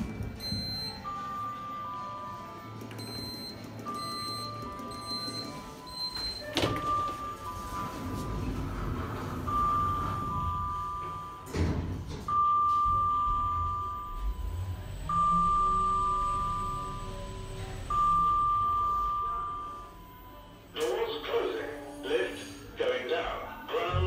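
Orona lift car: a push-button click, then an electronic two-note falling chime repeating about every second and a half, with short high beeps over the first few seconds. A couple of dull thunks come from the doors or car mechanism. The chime rings louder for its last three rounds, each fading away.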